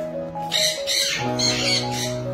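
Background music of sustained chords, with parrots squawking in a quick run of shrill calls from about half a second in.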